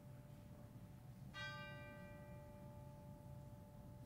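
A single faint, bell-like struck note about a second and a half in, ringing on and slowly fading over a low background hum.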